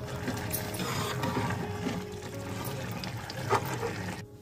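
Saag bubbling at a hard boil in a kadhai on a high flame to boil off its excess water, while a metal ladle stirs through it with a few clicks against the pan.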